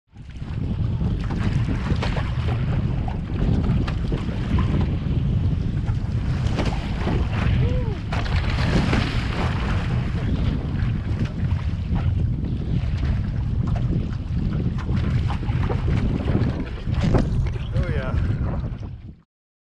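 Heavy wind buffeting on the microphone over rushing, splashing sea water along an OC1 outrigger canoe's hull in choppy water.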